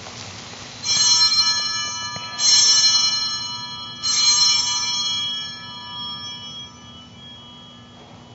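Small altar bells rung three times, about a second and a half apart, to mark the elevation of the consecrated host. Each ring is a bright cluster of high tones that fades away before the next.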